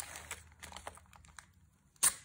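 Faint crackles and small clicks of blue painter's tape being peeled off watercolour paper, thinning out after about a second.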